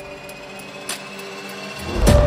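Epic action-trailer background music in a quiet passage: a few held notes with occasional soft ticks, swelling into a loud hit at the very end.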